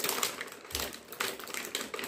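Plastic or paper wrapping crinkling and crackling as a package is handled and pulled open by hand, in quick irregular crackles.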